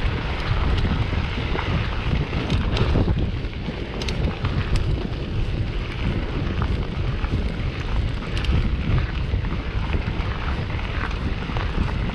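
Wind buffeting the microphone of a camera riding on a mountain bike, over the steady rumble of knobby tyres rolling on a gravel track. A few sharp clicks and ticks come through now and then.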